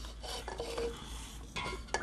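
Handling noise of fingers and a cup rubbing and bumping right against a phone's microphone: low scraping and rustling with a sharp tap near the end.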